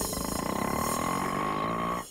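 Auto-rickshaw engine running steadily as the auto pulls away, with a fast even pulse, cut off abruptly at the end.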